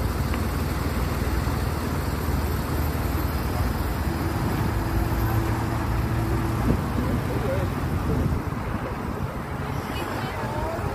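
Steady road traffic noise with indistinct voices mixed in, and a single sharp knock about two-thirds of the way through.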